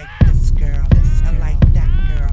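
Hip-hop instrumental: a beat of deep kick drums and heavy bass comes in suddenly about a quarter second in, close to three kicks a second, with a melody that glides up and down above it.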